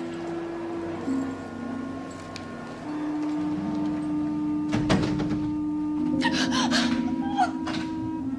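Background music of sustained, slowly changing chords, shifting to new chords every couple of seconds. A few short breathy sounds from a woman come in the second half.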